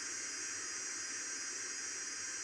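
Steady white-noise hiss closing an electronic music track, with no melody or beat left in it.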